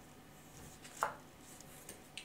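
Tarot card being drawn from the deck and handled, with one sharp light tap about halfway through and a few fainter clicks over quiet room tone.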